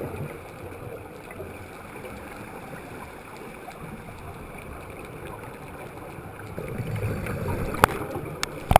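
Muffled underwater sound heard through a camera housing: a scuba diver's exhaled regulator bubbles gurgling, quieter through the middle and swelling again near the end, with a single sharp click just before the end.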